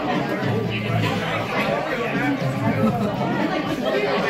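Café chatter: several people talking at once at nearby tables, a steady hubbub of voices.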